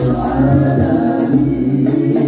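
Al-Banjari hadroh music: several men singing a sholawat together in unison, with the beat of hand-struck terbang frame drums beneath.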